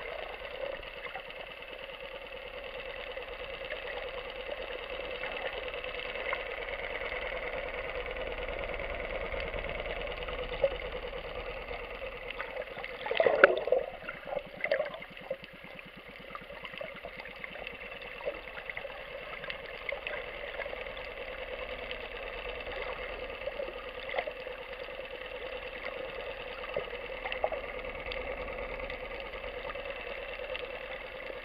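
Underwater recording of a steady, droning boat engine heard through the water, with a brief louder rush of water noise about 13 seconds in.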